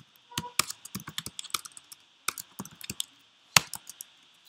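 Typing on a computer keyboard: two quick runs of keystrokes separated by a short pause, then a single sharper click near the end.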